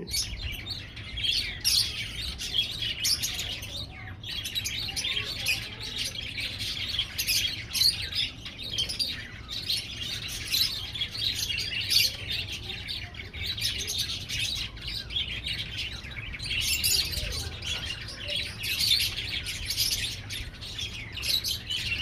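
Many small birds chirping and twittering in a dense, continuous chorus, over a low steady rumble.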